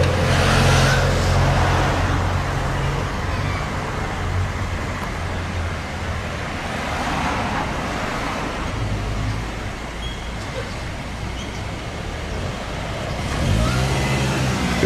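Road traffic going by: a low engine hum and tyre noise, loudest in the first few seconds and again briefly about eight seconds in.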